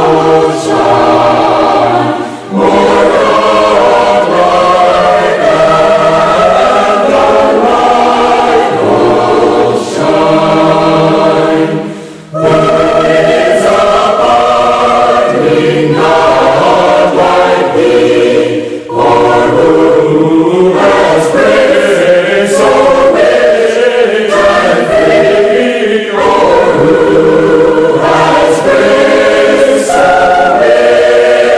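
A choir singing a hymn, with brief breaks between phrases.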